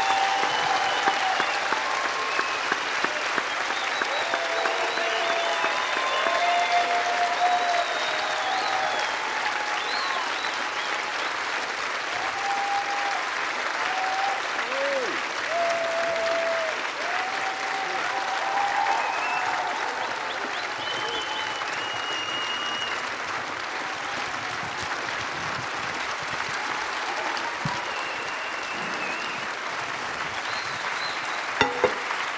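A large audience applauding steadily, with scattered voices calling out and cheering over the clapping.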